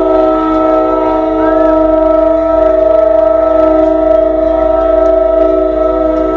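Multi-chime air horn of an EMD GP40 diesel locomotive sounding one long, steady chord.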